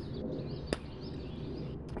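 Birds chirping faintly in the background over a low outdoor rumble, with a single sharp click about a third of the way in.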